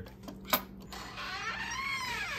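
A sharp click about half a second in, then a drawn-out creak that rises and falls in pitch: a door swinging open on its hinges.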